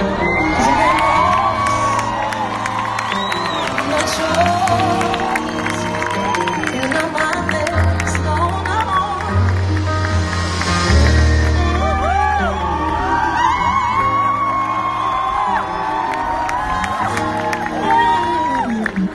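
Live pop band playing held chords over a steady bass line, with a festival crowd cheering, screaming and whooping throughout.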